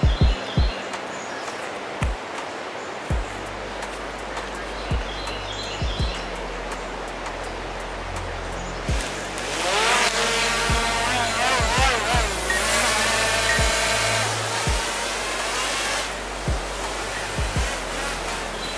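Small quadcopter drone's motors whining from about nine seconds in, the pitch wavering up and down as their speed changes, for several seconds. It sits over background music with a steady low beat.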